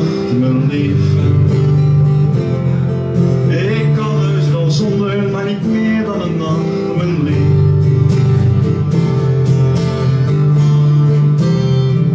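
Acoustic guitar played live, strummed chords ringing on steadily through a song passage.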